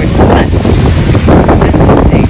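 Strong wind buffeting the phone's microphone in loud, uneven gusts, mixed with surf breaking on the beach.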